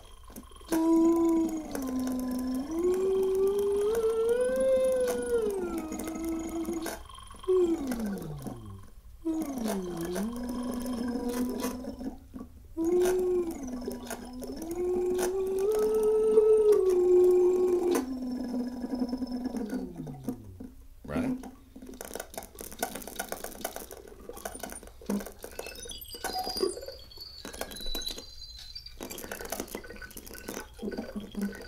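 A synthesizer tone from a wearable breath- and hand-controlled electronic instrument, moving between a few held pitches with smooth slides between them and twice dropping away in a long falling glide, near 8 s and 21 s in. After that only scattered faint clicks and taps.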